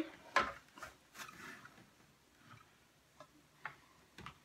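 A few light clicks and taps from clear plastic organizer trays being handled on a wooden desk.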